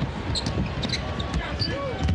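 A basketball being dribbled on a court, heard in the game footage of a televised NBA game. A voice starts talking near the end.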